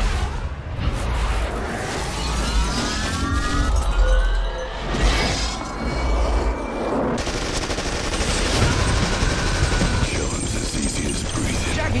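Dense trailer-style montage soundtrack: music layered with clips' sound effects, including sudden gunfire-like bursts and booms and a rising whooshing glide about three seconds in.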